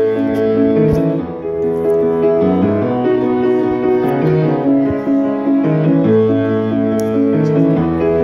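Piano played with both hands: chords over held bass notes, at a slow, steady pace.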